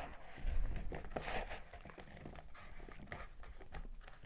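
Cut potato pieces being tossed by hand in a plastic bowl: soft, irregular rustling and knocking as the pieces shift against each other and the bowl.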